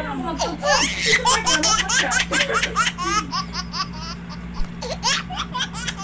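Loud, hearty laughter in quick repeated bursts, with a steady low hum underneath.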